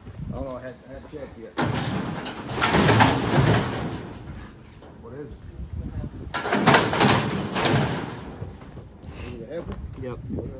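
Steel livestock squeeze chute and headgate rattling and clanging, in two loud bouts of about two seconds each, while it holds a bison calf.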